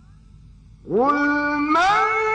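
A man's voice in melodic Quran recitation: about a second in he begins a long held note that glides up into a steady pitch, then leaps to a higher held note near the end.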